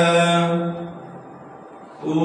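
A man's voice chanting a line of Gurbani scripture, holding a long steady note that fades out about a second in, followed by a brief pause in the chant.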